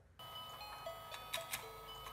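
Battery-operated toy fishing game switched on: a faint electronic melody of single held notes plays while the rotating board gives a few light clicks.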